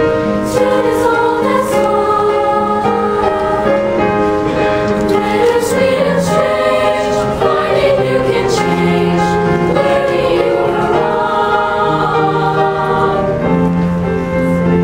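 A middle school choir singing in unison and harmony, with steady instrumental accompaniment underneath.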